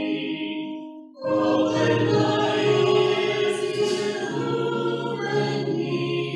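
A church congregation singing a slow hymn together with piano accompaniment. One line ends about a second in, and after a short breath the next line begins.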